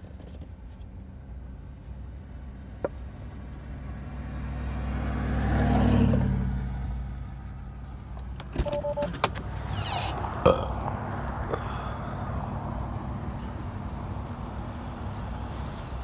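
Another motor vehicle draws close and moves off: its engine rumble swells to a peak about six seconds in, then fades. A short two-tone beep and a few sharp clicks follow about nine to ten seconds in.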